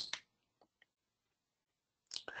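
Near silence: room tone, with two faint short clicks a little over half a second in.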